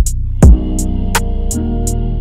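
Instrumental hip-hop beat at 83 BPM in D minor, built on a soul sample: a heavy kick about half a second in, hi-hats ticking about three times a second, and sustained sampled chords over a deep 808 bass note that changes pitch about halfway through.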